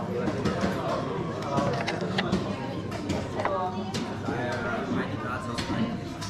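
Indistinct voices of several people talking in a hall, with scattered sharp clicks and knocks.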